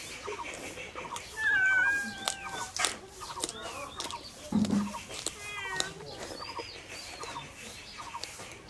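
Animal calls in the background: a short call repeating steadily, several chirps, a loud high drawn-out call about a second and a half in and a falling run of calls a little after the middle. A few sharp crunches of raw carrot being bitten and chewed are mixed in.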